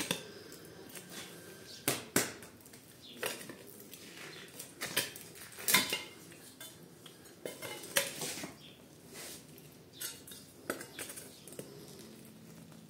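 Green plastic scraper chipping and scraping at a thick crust of dried, cracked mud caked on a rug, giving irregular sharp scrapes and clicks as bits of hard mud break away, a few louder strokes every couple of seconds.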